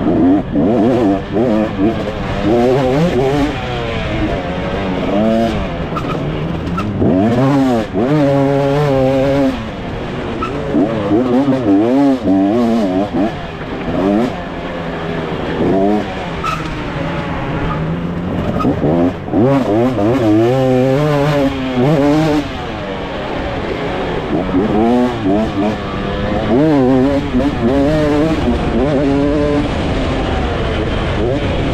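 2024 KTM 250 SX two-stroke motocross engine, heard from on the bike, revving up and dropping back over and over as the rider opens and shuts the throttle and changes gear.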